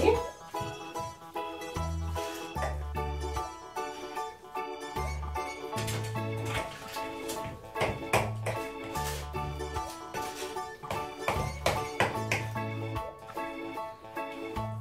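Background music: a melody of held tones over a bass line that changes note every second or so.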